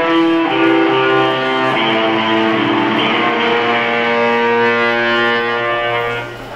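Electric guitar through an amplifier holding long, sustained notes that change pitch a few times, with no drums playing.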